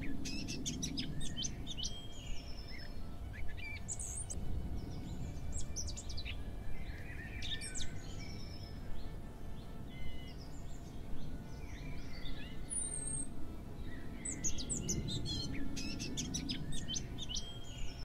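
Several wild birds chirping and calling in short, scattered notes, over a low steady rumble of outdoor background noise.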